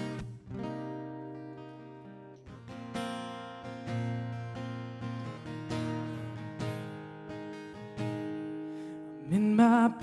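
Solo acoustic guitar playing slow strummed chords, struck about once a second and left to ring. A man's singing voice comes in near the end.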